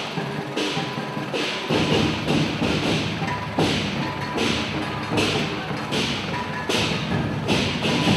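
Temple-procession drum-and-cymbal percussion playing a steady beat: a cymbal crash a little more than once a second over drum thuds, with the drumming growing louder about two seconds in.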